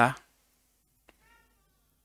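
The tail end of a man's spoken word, then near silence broken about a second in by a faint click and a short, faint high-pitched call.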